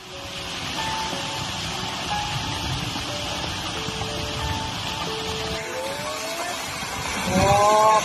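Landslide of earth and rock sliding down a steep hillside, a steady rushing noise with background music of sustained notes over it. Near the end it grows louder, with a rising tone.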